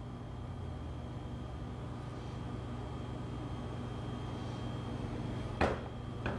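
Steady low room hum with a faint, steady high tone. About five and a half seconds in comes one sharp clink of kitchenware as batter is poured between ceramic ramekins.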